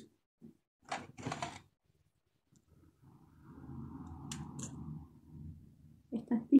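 Quiet handling of a ribbon-wrapped craft stem: a few soft clicks and rustles about a second in, then a faint low rumble in the background for a couple of seconds.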